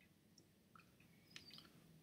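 Near silence: room tone, with a few faint short clicks a little past the middle.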